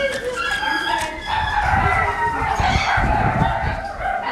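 An animal's drawn-out call lasting about two seconds, over low thumps.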